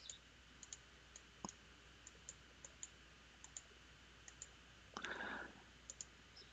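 Faint computer mouse clicks, a dozen or so scattered irregularly over near-silent room tone, with a brief soft rustle about five seconds in.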